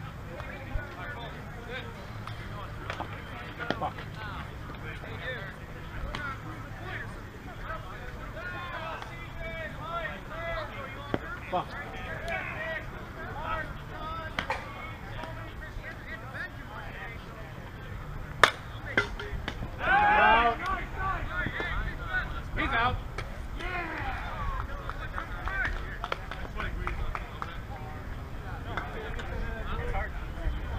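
Softball players' voices calling out across the field, with a steady low rumble of wind on the microphone. A single sharp crack comes about two-thirds of the way through, followed at once by a loud shout.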